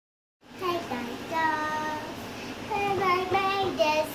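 A young girl singing unaccompanied, with long held notes that bend up and down in pitch; her voice comes in about half a second in.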